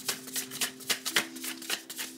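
A deck of tarot cards being shuffled by hand, from one hand into the other. It makes an uneven run of crisp card snaps and slaps, about four or five a second.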